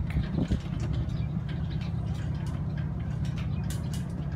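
Steady low outdoor city rumble with a few faint ticks.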